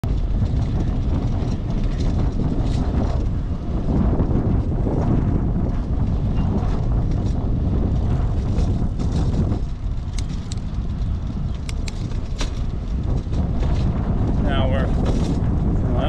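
Wind buffeting the microphone of a camera on a moving bicycle, a steady low rumble over street noise, with a few sharp clicks a little past the middle. A voice comes in near the end.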